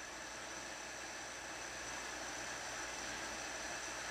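Steady, even background hiss (room tone) with no distinct events.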